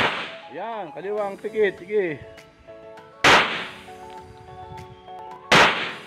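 Three semi-automatic pistol shots: one at the start, one about three seconds in and one near the end, each a sharp crack with a short decaying tail.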